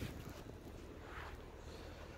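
Quiet: a faint, steady low background rumble with no distinct sound in it.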